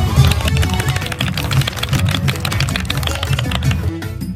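Music with a steady percussive beat and a strong bass line.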